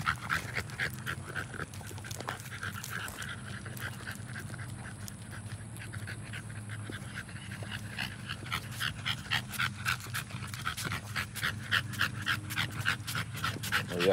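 American bully dogs panting fast, about four breaths a second, growing louder in the second half. They are hot and tired from running about.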